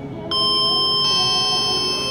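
Elevator hall lantern chime: a two-note electronic chime, the second note about a second after the first, both ringing on together. It announces a car arriving at the floor to travel down.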